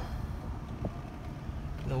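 2006 BMW E53 X5 3.0i's inline-six engine idling steadily, heard from inside the cabin, with one small click about a second in.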